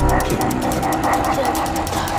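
Trailer sound design: fast, even mechanical ticking over a deep rumbling drone, while a voice says "Tick... tack" in German.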